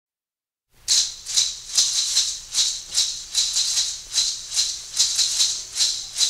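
A shaker playing a steady rhythm on its own, about two and a half shakes a second, starting just under a second in: the solo percussion intro of a calypso-flavoured rhythm and blues record.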